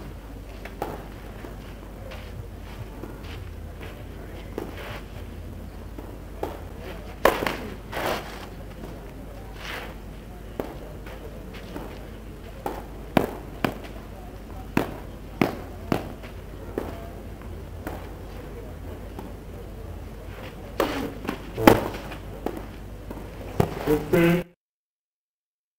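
Tennis ball being struck by rackets and bouncing on a clay court during rallies: a series of sharp pops, with a pause in the middle and a quick cluster of hits near the end.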